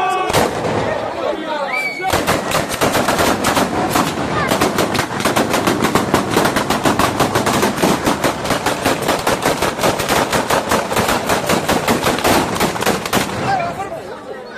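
Batteria alla bolognese: a long string of firecrackers tied along a rope going off in a rapid, continuous chain of sharp bangs, many a second. A couple of single bangs come first, and the dense chain starts about two seconds in and stops shortly before the end.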